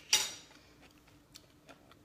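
A person chewing crunchy homemade sauerkraut with a hand over the mouth: a short loud crunch right at the start, then a few faint crunches.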